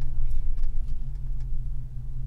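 Pickup truck's engine and exhaust, fitted with a Roush muffler and an added resonator, running with a steady low drone heard inside the cab.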